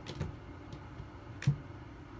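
Tarot cards being drawn from the deck and laid down on a tabletop: a few light taps and clicks, the loudest about one and a half seconds in.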